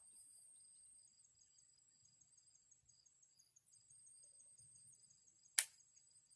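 One short, sharp click from the shotgun being aimed, with no shot going off: the gun misfires. Faint, steady chirring of insects runs underneath.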